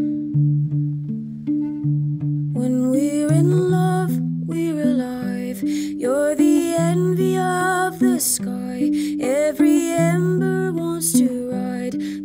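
A woman singing a slow melody over plucked guitar. The guitar plays alone for about the first two and a half seconds, then the voice comes in.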